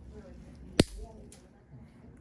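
Single-action nail nipper cutting through a thick, overgrown great toenail: one sharp crack a little under a second in, then a softer click about half a second later.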